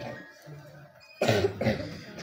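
A short near-quiet pause, then about a second in a sudden loud cough lasting about half a second.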